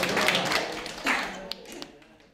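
A small group of people clapping their hands, with voices among them, the sound dying away near the end as two last sharp claps stand out.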